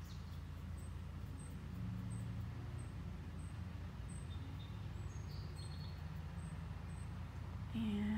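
Steady low hum, with faint short high-pitched chirps repeating about every half second.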